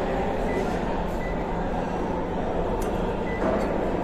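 Short high beeps from a Godrej microwave oven's keypad as its buttons are pressed, three times, over a steady background hum and noise.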